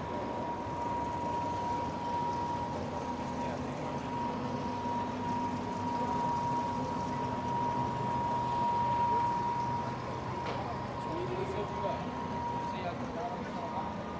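Busy city street ambience: a crowd of pedestrians talking and a vehicle engine running mid-way, with a steady high-pitched tone that stops near the end.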